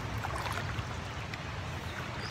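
River water rushing steadily through shallow whitewater: a continuous, even noise with a low rumble underneath.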